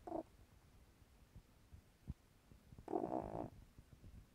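Elderly domestic cat snoring in her sleep: a short snore at the very start and a longer, louder one about three seconds in, with a faint low rumble of breathing between.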